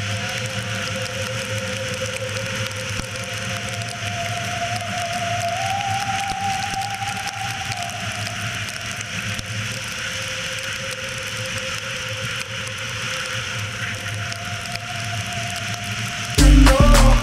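Yamaha XJ600 Seca's air-cooled inline-four running at freeway speed in the rain, under a steady hiss of wind and wet road noise. A faint engine whine climbs a little about five seconds in and eases back down about three seconds later.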